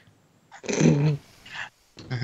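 A growling, animal-like vocal sound, one longer rough call followed by a short second one.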